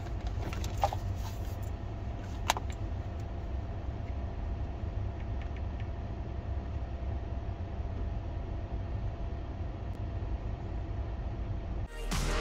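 Steady low rumble of a car idling, heard from inside the cabin, with a faint steady hum and two short sharp clicks about one and two and a half seconds in.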